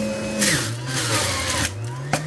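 Electric juicer's motor running, its hum dropping in pitch about half a second in with a rough grinding as produce is pushed down the feed chute against the cutter. It picks back up near the end as the load eases.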